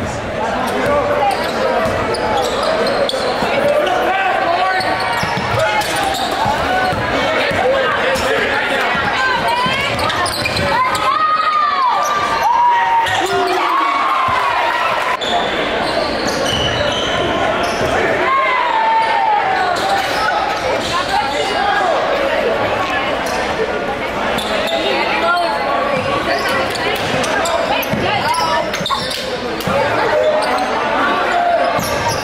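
Basketball game in a gymnasium: a ball dribbling on a hardwood court, many sharp knocks over constant crowd chatter and shouting, echoing in the large hall.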